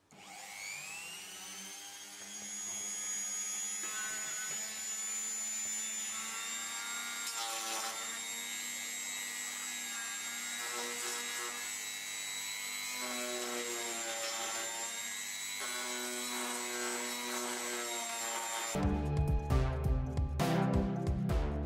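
Flexible-shaft rotary tool winding up to speed in its first second or so, then running with a steady high whine as it is worked on the plastic bumper. It stops shortly before the end, where music takes over.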